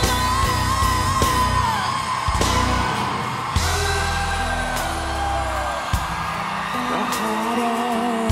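Live band music with a wordless sung vocal line over sustained bass and guitar. A few sharp drum hits land about two and a half, three and a half and six seconds in.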